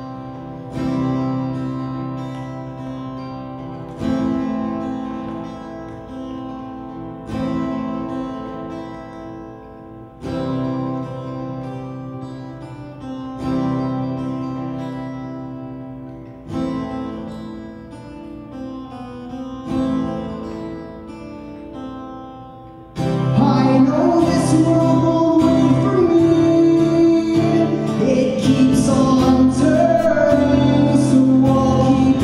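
Acoustic guitar playing a slow intro in the key of C: single chords struck about every three seconds and left to ring and fade. About three-quarters of the way through, the playing becomes louder and busier and a man's singing voice joins in.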